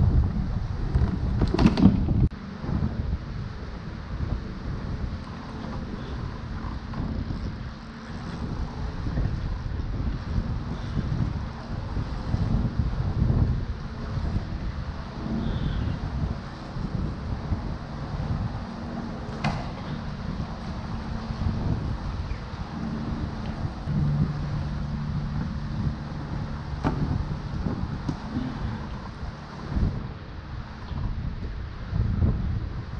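Wind rumbling on the microphone over choppy water slapping around a kayak, with an occasional light knock on the hull.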